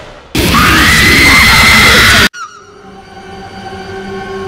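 A loud, harsh screeching sound effect whose pitch swings up and then holds. It lasts about two seconds and cuts off suddenly, and a low sustained music drone follows.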